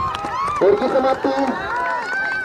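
Speech only: a man talking continuously, live commentary on a village cricket match.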